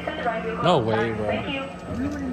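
Voices, with one short, sharp rising-and-falling cry about two-thirds of a second in, over a steady low hum.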